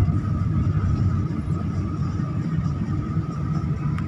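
Steady engine and tyre rumble heard inside a car's cabin while driving on a snow-covered road, with a faint steady high whine above it.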